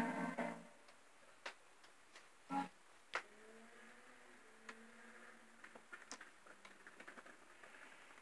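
A cartoon's sung soundtrack cuts off in the first half second, leaving a quiet room with scattered small clicks and ticks and a brief blip a couple of seconds in.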